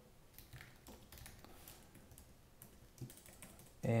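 Typing on a computer keyboard: a quiet, irregular run of keystrokes.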